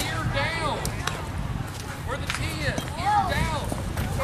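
Background voices of several people talking and calling out, over a steady low rumble.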